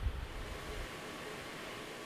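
Steady background hiss with no distinct event, and a low rumble during roughly the first second.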